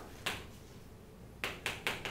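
Chalk tapping on a chalkboard during writing: one sharp tap a quarter-second in, then three quick taps about a fifth of a second apart in the last half-second.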